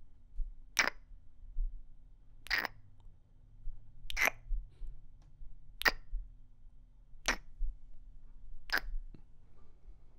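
Close-miked kissing: six short lip smacks, about one every second and a half.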